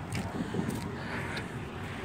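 Steady low outdoor street background noise on a phone microphone, with a couple of faint knocks.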